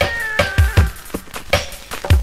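Reggae dub instrumental: drum beats with deep bass thuds, and a high held tone that slides down in pitch over the first second.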